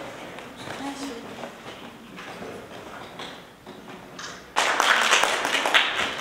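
Low room murmur with faint voices, then a sudden burst of clapping by a group of people about four and a half seconds in, the loudest sound here.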